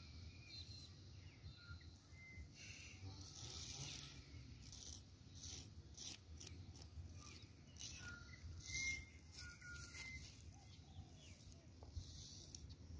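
Faint outdoor ambience: a low steady rumble with scattered short high bird chirps and brief rustles.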